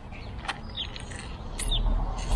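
Quiet handling of a plastic aftermarket side-skirt piece, with a single sharp click about half a second in. A few short bird chirps sound over it, and a low rumble of wind on the microphone rises near the end.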